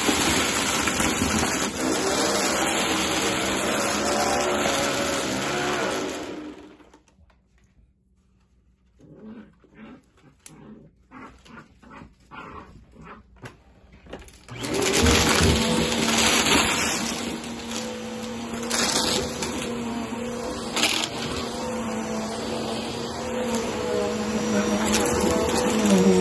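Bissell upright vacuum cleaner running, then shut off about six seconds in. After a quiet stretch of small irregular ticks and rustles, it starts up again about fifteen seconds in and runs steadily with a steady hum.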